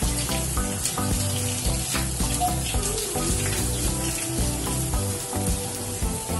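Background music with a steady beat over the steady hiss of a running shower.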